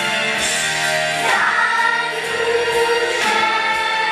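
Music: a song sung by a group of voices over instrumental accompaniment.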